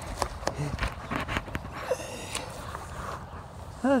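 Light clicks and knocks of a handheld phone being moved about, over a steady low outdoor rumble, with a short spoken word just before the end.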